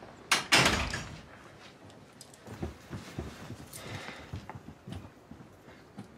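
A loud double thump about half a second in, then a run of light, uneven footsteps thudding as two children go up the stairs.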